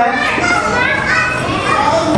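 A man preaching into a handheld microphone, his voice carried over a PA system, speaking continuously.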